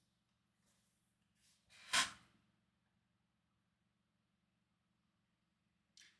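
Near silence, broken once about two seconds in by a short, sharp breath close to the microphone.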